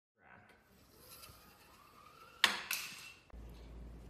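A LEGO zipline rider's pulley wheel running along a taut string, a faint whir rising steadily in pitch as it gathers speed, then a sharp clatter about two and a half seconds in, with a second smaller one just after.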